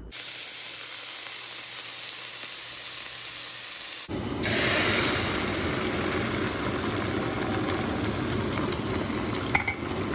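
Frying sizzle. About four seconds of steady, thin hiss change abruptly to the fuller, louder sizzle of beaten eggs cooking in a hot oiled frying pan, with a small click near the end.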